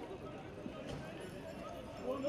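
Footsteps of riot police boots on pavement, with voices shouting in the background and a sharp knock about a second in.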